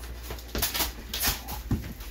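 Brief rustling and scuffing handling noises, in a few short bursts, with a soft knock near the end.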